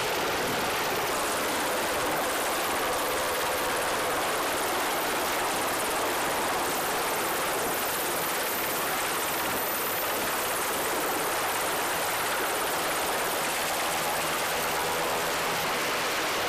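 MH-60S Sea Hawk helicopter flying low over a carrier flight deck; its rotor and engines make a steady, even rushing noise throughout.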